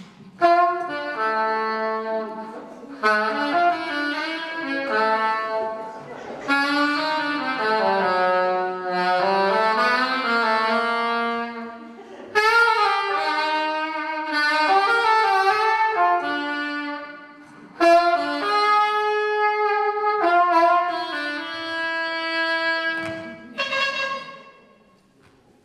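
A saxophone playing a live solo melody in several phrases, each starting with a sharp attack, about half a second in, then near 3, 6.5, 12.5 and 18 seconds.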